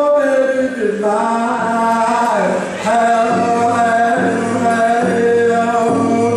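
A man singing solo in the Northern Plains hand drum style of a round dance song, holding long high notes that slide down in pitch, with short breaks between phrases.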